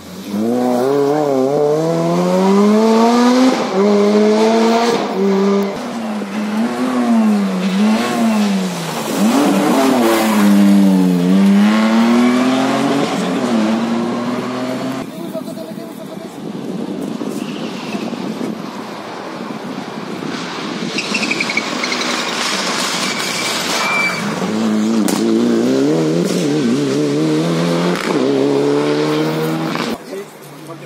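Rally car engine accelerating hard past the crowd, its pitch climbing and dropping with each gear change, then fading into the distance. About 25 seconds in, the next rally car is heard approaching, its engine rising through the gears.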